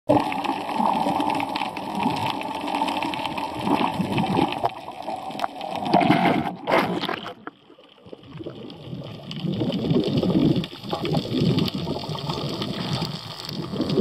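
Water rushing and sloshing around an underwater camera, a steady rough churning with a short quieter gap about halfway through.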